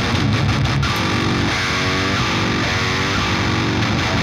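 Heavily distorted electric rhythm guitar played through the Bogren Digital MLC SubZero amp simulator, with its IRDX dynamic cabinet-IR processing engaged. Tight chugs for the first second or so, then held, ringing chords.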